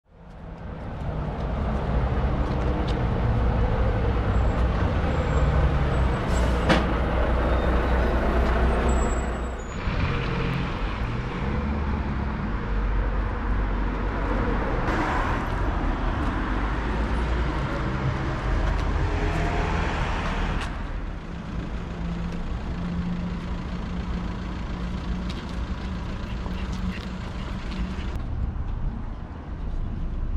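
Road traffic: motor vehicles running and passing with a low engine drone under road noise. The sound changes abruptly a few times.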